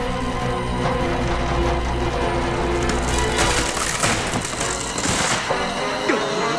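Dramatic orchestral cartoon score. About three seconds in, a burst of crashing, splintering noise joins it for roughly two seconds.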